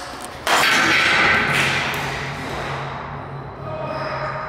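An object dropped down a concrete stairwell hits with a sudden loud crash about half a second in, and the sound echoes and fades away over the next couple of seconds.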